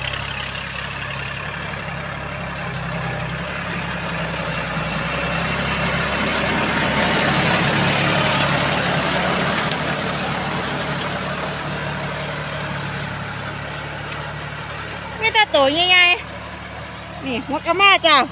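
L36 tractor's diesel engine running steadily under load, pulling a three-disc plough through sugarcane stubble. It grows louder toward the middle as it comes close, with the scrape of the discs cutting and turning the soil.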